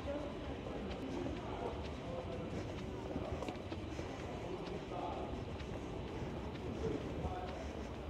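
Street ambience: wind rumbling on the microphone, with faint voices of passers-by and light footsteps on paving.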